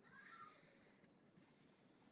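Near silence, with a faint short sound in the first half second.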